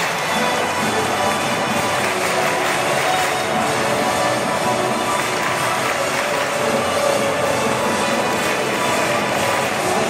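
Football stadium crowd singing supporters' chants together, a steady, dense wall of voices that never lets up.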